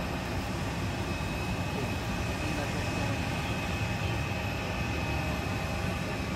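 Steady low rumble with a constant high-pitched whine from distant jet aircraft around an airport apron.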